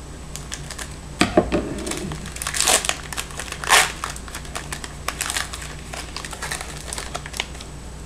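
A foil trading-card pack being snipped open with scissors, then its wrapper crinkling and rustling as the cards are worked out, in an irregular string of short crinkles.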